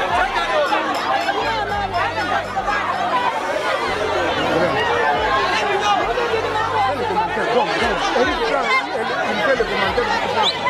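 Crowd chatter: many voices talking and calling at once, with a steady low hum underneath in stretches.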